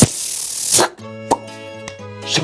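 Cartoon-style sound effects over background music: a sharp pop, then a hissing whoosh lasting under a second that ends in a falling tone. After that, music with held notes, with a short plop a little over a second in.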